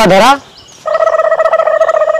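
A short spoken word, then about a second in, a steady buzzing tone at one unchanging pitch that lasts about a second and a half.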